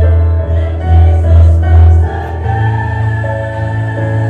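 Mixed choir singing in chords over a strong low bass; the harmony moves to a new held chord about two and a half seconds in.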